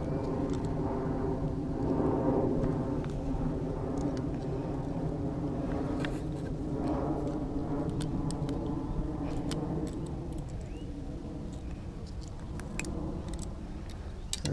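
A steady engine drone, several pitched tones held together, that slowly fades out after about ten seconds, with scattered light clicks and rustles close by.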